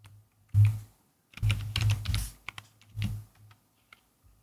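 Computer keyboard typing in short bursts: a few keystrokes about half a second in, a dense run of keystrokes in the middle, and another short burst near the end.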